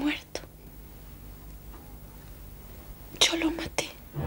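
A person's breathy, whispery vocal sounds: a short burst right at the start and another a little before the end, with faint quiet between them.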